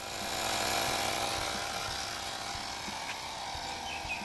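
Portable tyre inflator's small electric compressor running steadily as it pumps up a car tyre, fading in at the start.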